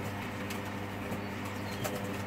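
Hoover Dynamic Next washing machine in its drain and 400 rpm interim spin: a steady hum from the drum motor and drain pump, with a few faint clicks.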